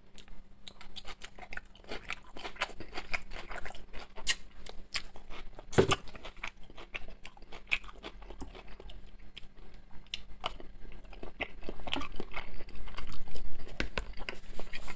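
Close-miked chewing of a mouthful of shredded cabbage salad: many small crunches and wet mouth clicks, with a sharper knock about six seconds in. The chewing gets louder near the end.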